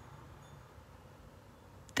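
A quiet pause: only a faint, steady low background hum.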